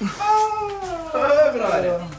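A man's long, drawn-out wail of dismay, high-pitched and sliding down, then swelling again and falling off, like a cry of 'nooo'.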